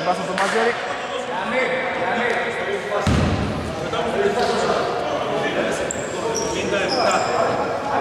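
Basketball hall during a stoppage in play: players' voices echo in the large gym, with knocks of a basketball on the hardwood floor and a low thud about three seconds in. Short high squeaks come near the end.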